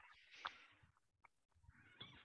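Near silence, with a couple of faint, brief sounds: one about half a second in and another near the end.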